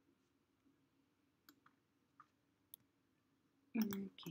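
A few faint, scattered computer mouse and keyboard clicks over a faint steady hum, then a louder short knock near the end.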